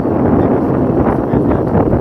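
Wind buffeting the microphone on a moving motorcycle, a loud, steady rush with the motorcycle's engine running under it.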